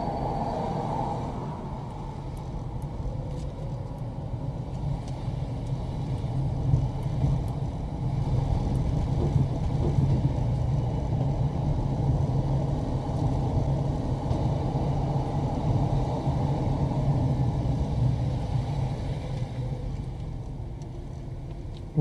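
A car driving slowly, its engine and road noise a steady low sound.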